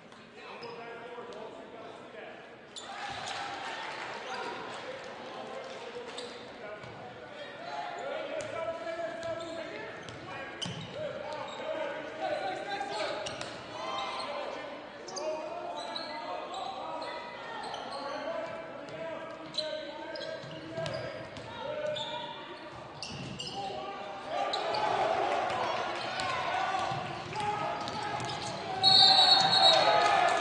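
Gym crowd chatter and shouting echoing in a large hall, with a basketball bouncing on the hardwood court. The crowd grows louder in the last few seconds, and near the end the noise jumps suddenly as a referee's whistle sounds.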